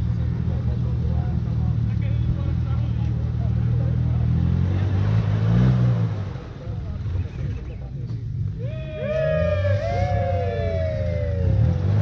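Off-road vehicle engine running steadily, with a brief rise in revs about five to six seconds in.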